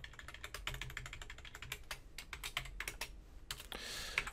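Quiet, rapid, irregular keystrokes on a computer keyboard: a run of key clicks while text is deleted and retyped.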